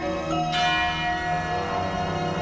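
Contemporary orchestral music: over held tones, a sharp bell-like percussion stroke about half a second in rings on and slowly fades.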